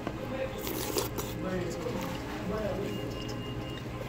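Chewing a mouthful of chili with soft, wet mouth sounds, under background voices and music in a restaurant dining room.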